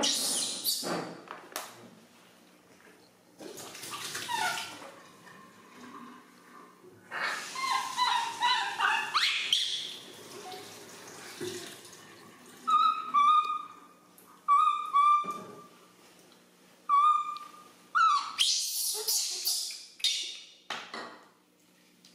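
Baby macaque crying for milk, as it does when hungry. Rough, shrill screeching cries come near the start, around four seconds in and again from about seven to ten seconds. Several short, clear, whistle-like coos follow, then another burst of cries near the end.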